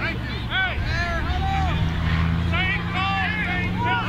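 Several voices shouting and calling across a football field at once, over a steady low hum.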